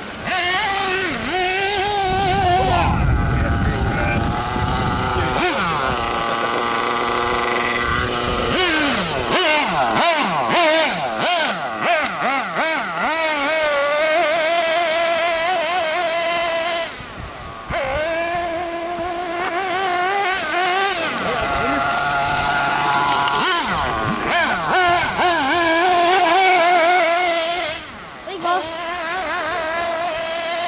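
Small nitro engine of a 1/8-scale RC buggy running at high revs, its pitch rising and falling constantly as the throttle is worked, with a brief drop off the throttle about 17 s in and again near 28 s.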